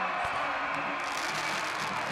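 Football stadium crowd cheering after a touchdown, a steady wash of many voices that gets a little brighter about a second in.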